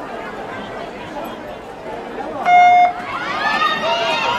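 Electronic start signal beeping once, a short steady tone about two and a half seconds in, starting a heat of young inline speed skaters. Spectators' voices rise just after it over a constant crowd murmur.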